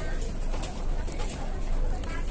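Dining-room background of a busy fast-food restaurant: distant voices over a steady low hum, with light clinks of a knife and fork on a plate.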